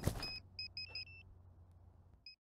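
Music fading out, then a series of short, high electronic beeps from a small beeper, quick and irregular, ending in two slightly higher-pitched ones, over a faint low hum.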